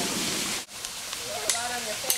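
Rushing creek water that cuts off suddenly under a second in. Fainter water noise follows, with voices and a sharp click about one and a half seconds in.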